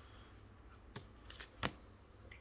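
A tarot deck handled in the hands as a card is drawn: faint rustling with a few short card snaps, the two clearest about a second in and again just over half a second later.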